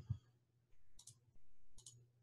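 Faint clicks: a quick pair about a second in and another pair near the end, over a low steady hum.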